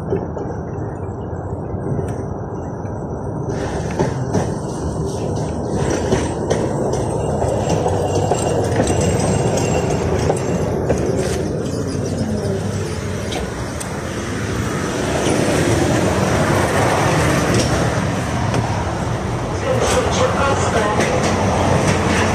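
KTM-5M3 (71-605) tram pulling in and stopping at a stop, its wheels rumbling and clanking on the rails over street traffic, with a few sharp knocks. The noise grows louder in the second half.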